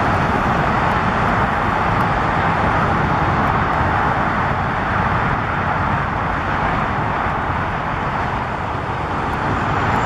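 Steady, even road and traffic noise with a rushing hiss, with no distinct events.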